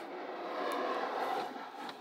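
A slab of small magnetic balls being shifted by hand across the tabletop, the balls rattling and scraping in a steady dense patter that fades near the end.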